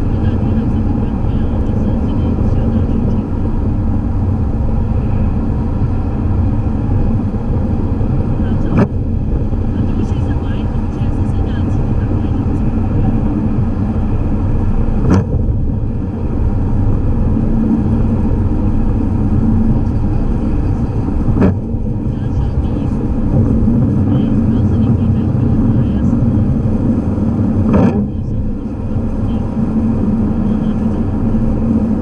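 Steady low rumble of a car's engine and tyres on a wet, slushy road, heard from inside the cabin. A short click comes about every six seconds, the windshield wipers sweeping on an intermittent setting.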